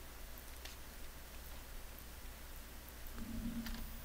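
A few faint, sharp computer-keyboard clicks over a steady low electrical hum and room tone, with a brief low hum about three seconds in.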